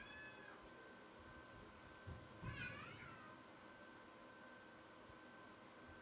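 Near silence, with two faint, short pitched calls that rise and fall: one at the very start and one about two and a half seconds in.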